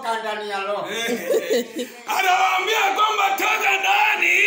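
A man's raised voice calling out, then from about two seconds in several voices shouting together, louder, in a hall with some echo.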